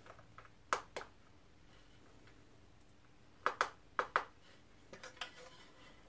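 Light sharp clicks and knocks of a glass digital bathroom scale being handled: its unit switch pressed and the glass platform set down on a table. Two clicks come about a second in, then a quick run of four a few seconds later.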